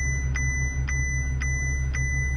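A steady high-pitched electronic alarm tone with a tick repeating about twice a second, over a low steady hum.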